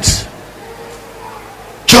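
A man's loud voice through a microphone and PA: a phrase dies away at the start, a pause of about a second and a half with faint room sound, then another loud word breaks in suddenly near the end.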